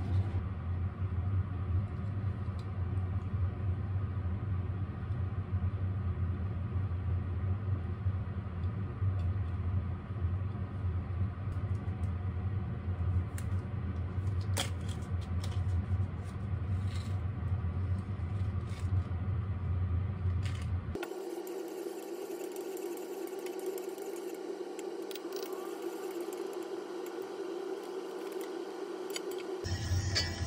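Steady low mechanical hum with a few light clicks of handling. About two-thirds of the way through, the low hum cuts off suddenly and a higher, steady drone carries on.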